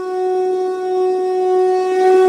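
A conch shell blown in one long, steady held note with a raw, reedy tone.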